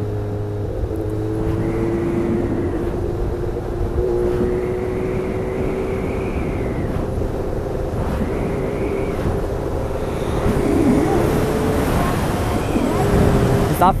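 Motorcycle engine running at a steady cruising speed under wind rush on the onboard camera's microphone; its pitch holds nearly level, with only small rises and dips. A second motorcycle comes alongside near the end, and the sound grows a little louder.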